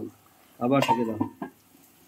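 A pot lid set down onto a stainless-steel cooking pot with a metallic clink, about a second in, followed by a smaller knock.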